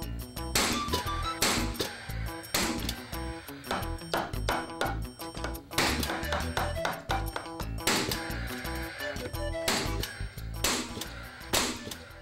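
Background music with about a dozen sharp shots, roughly one a second, from a Paslode cordless framing nailer driving nails into 2x4 wall studs.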